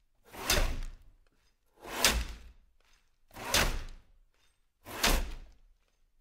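Long two-handed ice saws cutting through lake ice in unison, four rasping strokes about a second and a half apart, each starting sharply and fading within half a second, in a steady work rhythm.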